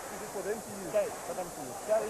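Faint, indistinct voices under a steady background hiss.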